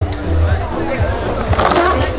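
Music with a heavy, steady bass line over crowd voices, cutting in suddenly, with a skateboard's wheels rolling on a concrete floor rising toward the end.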